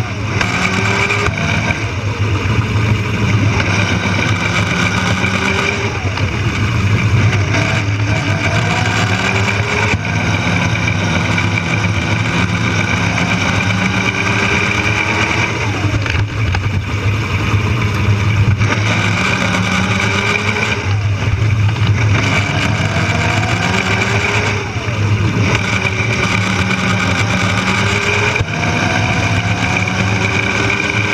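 Power Racing Series electric kart at race speed, heard onboard: the electric drive motor whines up in pitch again and again as the kart accelerates, over a steady, loud rumble of the running gear.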